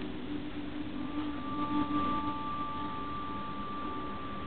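Television audio playing in the room: several held, steady musical tones, with a higher pair of notes coming in about a second in.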